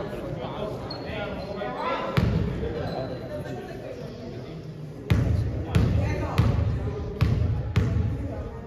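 Basketball bouncing on a hardwood gym floor: one bounce about two seconds in, then five dribbles about 0.6 s apart in the second half, as the shooter dribbles at the free-throw line.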